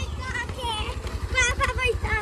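Honda Activa scooter's single-cylinder four-stroke engine running at low speed as the scooter rolls up close, an even low pulsing, with voices talking over it.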